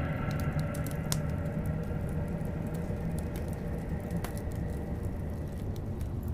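Wood log fire crackling, with a few sharp pops, over a low steady drone.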